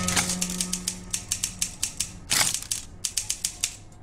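Typewriter keys striking in a quick, uneven run of sharp clicks, about five a second, with one longer swish about two and a half seconds in; the clicks stop shortly before the end.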